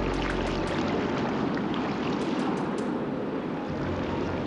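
Steady rush of ocean surf breaking on rocks, with scattered splashes of water around an inflatable raft coming ashore through the waves.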